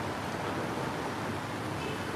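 Steady street background noise, an even hiss and low rumble with no distinct sounds.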